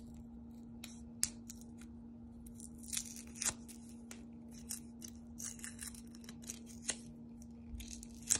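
Scattered short, light scratches and crackles of paper being handled at a drawing desk, over a steady low hum.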